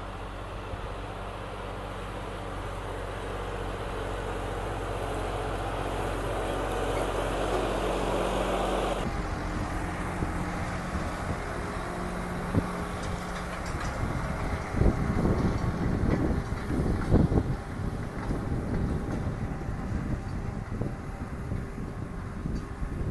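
John Deere 5405 tractor's three-cylinder diesel engine running steadily under load while pulling a disc harrow through stubble, growing louder as it comes closer. About nine seconds in the sound changes abruptly to a close, rougher engine note, with irregular loud low bumps from about fifteen to eighteen seconds in.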